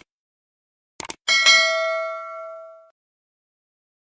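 Subscribe-button sound effect: a mouse click, a quick double click about a second in, then a notification bell ding that rings out and fades over about a second and a half.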